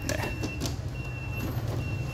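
Panasonic compressor dehumidifier running with a steady low hum, while a thin high tone comes and goes three times. A hand taps lightly on its plastic rear grille near the start and again about half a second later.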